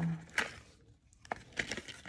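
A few light clicks and taps of hard plastic packaging being handled.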